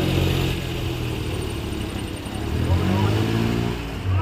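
A motor vehicle engine running with a steady low hum, with people's voices over it.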